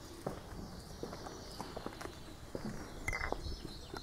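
Footsteps of a person walking on dry, sandy ground: a series of irregular short crunches and clicks.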